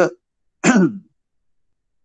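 A person clearing their throat once with a short cough, about half a second in.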